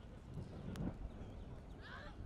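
Open-air football pitch sound: a steady low wind rumble on the microphone, a single knock about three-quarters of a second in, and a short distant shout from a player near the end.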